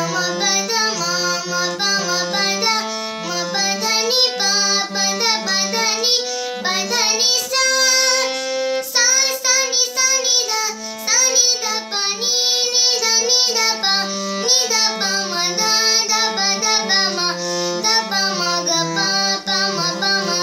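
A young girl singing a song while accompanying herself on a harmonium, whose reeds sustain chords and a moving bass note under her voice.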